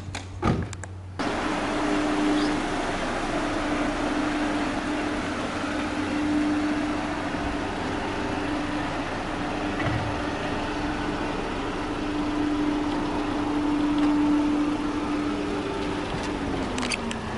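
A couple of short knocks, then the engine of a police patrol car (Alfa Romeo 159) running steadily at low revs, with a steady hum, as the car creeps forward out of an archway.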